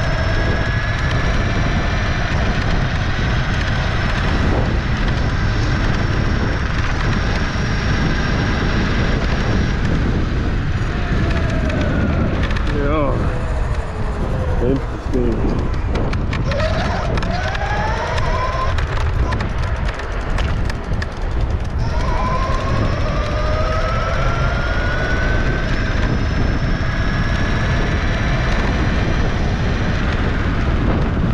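Dualtron Storm electric scooter at speed: its motors give a thin whine that climbs in pitch as it accelerates, dips and rises again in the middle as the speed changes, then climbs once more, all over a heavy wind rumble on the microphone.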